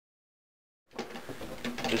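Dead silence for almost the first second, where the sound track drops out. Then a faint, rough scraping as a PVC threaded adapter is twisted into a hole in a plastic barrel lid, cutting its own threads.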